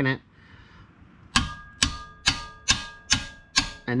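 Hammer striking a wrench set on a Loctite-coated bolt, about seven sharp metallic blows roughly two a second starting about a second and a half in, each with a brief ring. The blows shock the bolt to break the thread-locker loose.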